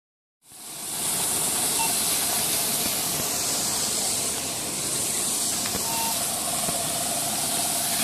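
A steady, loud hiss of a fire hose spraying water onto a burning scooter, with steam coming off the hot wreck; it starts about half a second in.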